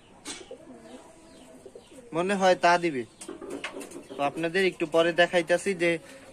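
Domestic pigeons cooing, several wavering calls that come one after another in the second half.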